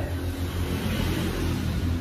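Steady low rumble with an even hiss over it: background noise, no speech.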